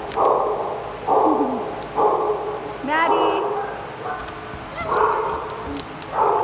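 A dog barking repeatedly, about once a second, with a higher rising yelp about three seconds in. Each bark trails off in echo.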